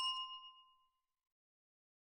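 A single bell-like chime, struck just before, rings out with a clear tone and dies away within about the first second, followed by dead silence.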